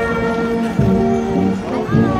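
Bavarian marching brass band playing, trumpets and tuba holding long notes.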